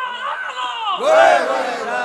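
A crowd of men shouting together in long calls that rise and fall in pitch.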